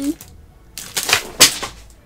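Plastic packaging of a Sanrio blind-bag figurine crinkling and clicking as it is handled, for about a second starting a little under a second in.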